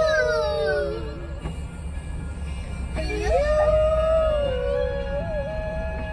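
A girl's voice sings or howls two long held notes, the first swooping up and down, the second held steady, over the low steady rumble of the vehicle.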